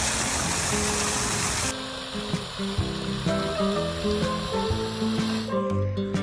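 Fountain water splashing and spraying under background music; about two seconds in, the splashing cuts off abruptly and the music carries on alone.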